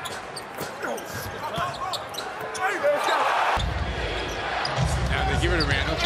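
Live basketball game sound in an arena: the ball bouncing on the hardwood court and shoes squeaking under a murmur of crowd noise. A fuller, lower crowd rumble comes in at about three and a half seconds.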